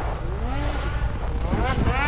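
A snocross race snowmobile's engine revving hard on the track, its pitch climbing as it accelerates, over a steady low rumble.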